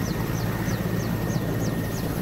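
Mi-8AMT helicopter running on the ground with its twin turboshaft engines: a steady rush over a low hum, with a short, high, falling chirp repeating about three times a second.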